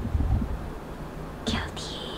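A woman's short whispered hiss through bared teeth, a disgusted 'sss', about one and a half seconds in, over a low rumble.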